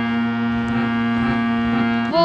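Harmonium holding one steady chord, its reeds sounding a sustained buzzy drone with no singing over it.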